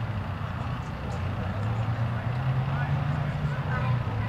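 Outdoor sports-field ambience: a steady low hum with faint, distant voices of players calling across the pitch.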